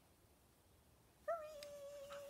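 A dog lets out one long, high whine a little over a second in, its pitch easing slightly downward.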